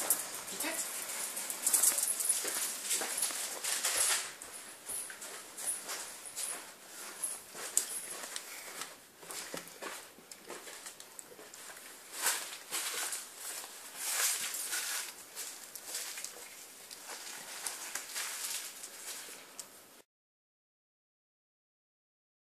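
A small dog chewing a hard treat, with irregular crunches and clicks, mixed with the rustle of a handheld camera being moved about. All sound cuts off abruptly near the end.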